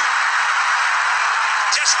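Stadium crowd cheering after a boundary: a dense, steady wash of many voices.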